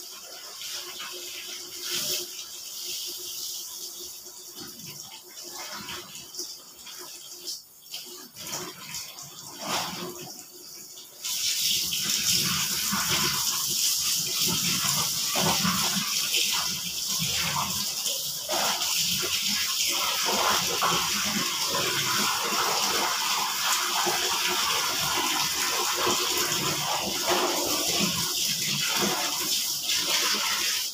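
Clothes being hand-rinsed in a plastic basin, with irregular sloshing and splashing of water. About eleven seconds in, a tap is turned on and water runs steadily and loudly over the washing.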